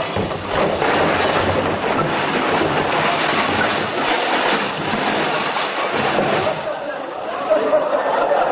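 Studio audience laughing: a long, loud laugh from a large crowd after a slapstick crash effect, dying down near the end.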